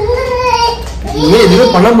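A voice singing, with long held notes that waver in pitch, dipping briefly about half a second in and coming back louder.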